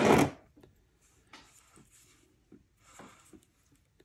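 The end of a spoken phrase, then a few faint, short rustles and light clicks of hands handling the wires and plastic chassis of an HO-scale model locomotive.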